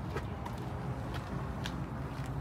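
A few footsteps on asphalt over a steady low hum.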